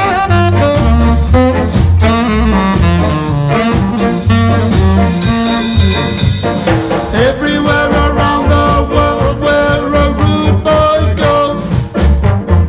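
Instrumental passage of a ska song: saxophone and trombone play melody lines over a pulsing double-bass line, with piano and drums.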